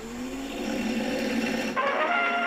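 A 1903 Edison cylinder phonograph starting to play: a low tone slides upward in pitch, then near the end the recorded music from the cylinder comes in suddenly.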